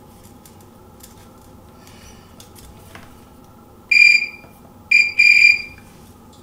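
Meter continuity beeper sounding three times, starting about four seconds in. The first and last beeps are longer, the middle one short. The beeps show that the hair dryer's switch is making contact in its second position.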